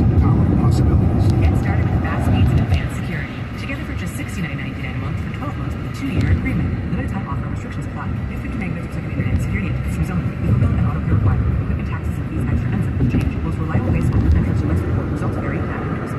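Steady road and engine rumble of a car at freeway speed, heard from inside the cabin.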